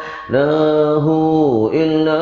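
A man chanting zikir, drawing out 'ya Allah' in long held notes that step up and down in pitch, with a quick breath just after the start.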